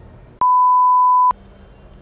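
A single electronic bleep: one steady pure tone lasting just under a second, which starts and stops abruptly with a click. The room sound drops out beneath it, as with a censor bleep dubbed over the soundtrack.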